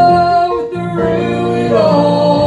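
Gospel song performed live: a woman singing with keyboard accompaniment holds a long note that breaks off about half a second in. After a brief dip the singing resumes in several voices in harmony.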